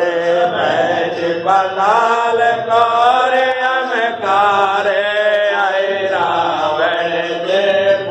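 Voices chanting a Hindu devotional aarti hymn in a steady sung melody, one line flowing into the next.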